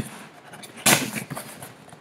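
Knife cutting the packing tape on a small cardboard box: a short scratchy rasp a little under a second in, followed by fainter scrapes and cardboard handling.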